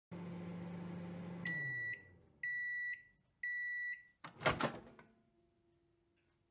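Microwave oven running with a steady hum that winds down as the cycle ends, then three high beeps about a second apart signalling the cook time is done. A loud clunk follows as the door is opened.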